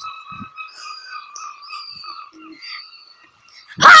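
A child's loud cry of 'Ah!' near the end, after a few seconds of faint background with a thin steady high tone.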